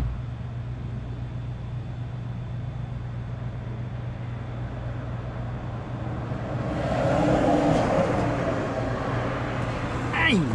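Golf cart running with a steady low hum. From about seven seconds in, a louder rush of vehicle noise builds and then eases off near the end.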